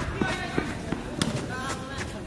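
A futsal ball being kicked during play: several sharp thuds, the sharpest about a second in, with players shouting to each other.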